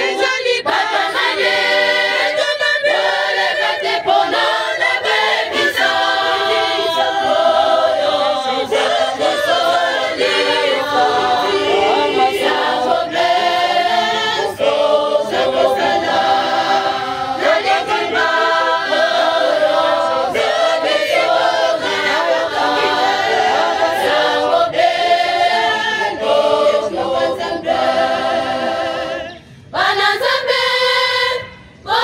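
Large choir, mostly women and girls, singing a cappella, with a brief break in the singing just before the end.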